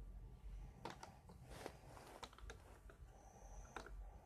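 Faint clicks and snaps of a small plastic toy being handled as its parts are pulled apart and opened out, about half a dozen clicks at uneven intervals.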